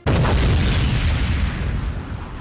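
A deep boom sound effect that hits suddenly and fades slowly into a long rumbling tail.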